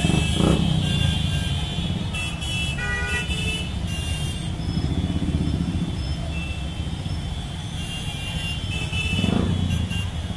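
A dense crowd of motorcycles running together in a slow procession, with horns honking now and then. One bike is revved up and back down briefly about half a second in and again near the end.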